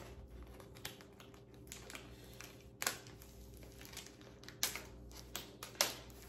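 A plastic bag of gingerbread pieces being slit open with a knife: scattered light crinkles and small clicks of plastic, with a few sharper clicks near the middle and toward the end.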